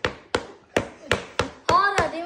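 Repeated sharp knocks on the hard chocolate shell of a smash cake, about three blows a second, the shell too hard to break easily.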